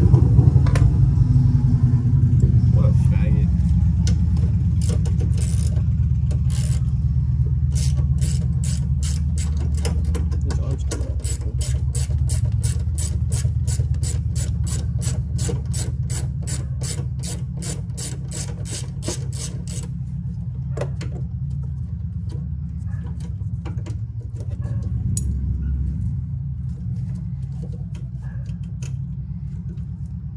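A steady low rumble, with a long run of rapid, evenly spaced metallic clicks (about three a second) through the middle, then scattered single clicks as hand tools work on the engine's intake hardware.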